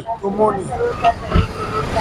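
Outdoor background of other people's voices with a low rumble of passing vehicles, heard in a pause in the foreground speech.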